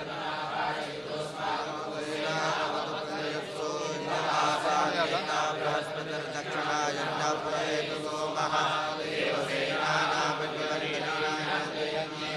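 A group of Hindu priests reciting Vedic mantras together: a steady chant of many men's voices.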